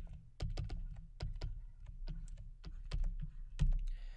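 Stylus tapping and clicking on a pen tablet while handwriting, irregular sharp ticks about four a second, each with a dull low knock.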